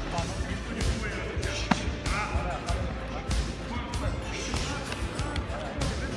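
Irregular thuds of kicks and punches landing in a full-contact karate bout, one sharp strike about two seconds in, with voices calling out around the mat.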